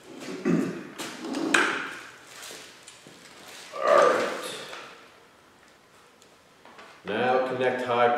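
Handling noises from assembling a pressure washer: a few knocks and rustles as the handle frame and plastic packaging are handled, with the loudest rustle about four seconds in. A man starts speaking near the end.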